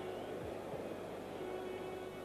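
Faint, steady background noise on an old broadcast soundtrack, with a low hum and a faint held tone running under it.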